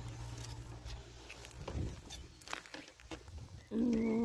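Light footsteps and rustling on dry garden ground, with scattered soft clicks.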